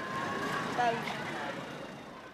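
Indistinct voices over a steady street noise that takes in passing traffic, the whole sound fading down toward the end.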